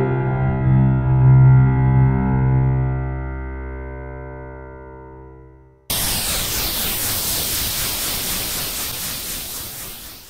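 A sampled piano chord played through a convolution reverb, struck at the start and dying away slowly over about six seconds. About six seconds in it cuts to a reverb impulse response with a phaser-tremolo effect: a burst of hiss that swells and fades in slow pulses and dies out near the end.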